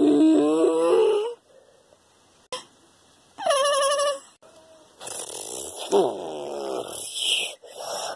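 A person's voice making monster roars and screeches for toy kaiju: a rising cry in the first second, a higher shriek about three and a half seconds in, then a rougher, wavering cry from about five seconds on.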